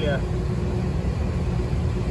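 Steady low rumble and electrical hum of running ventilation machinery, with one constant pitched hum tone over it.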